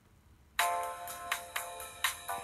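Bell-like electronic chime jingle of a radio station's top-of-the-hour time signal, starting suddenly about half a second in after a brief silence, with several ringing notes struck in quick succession.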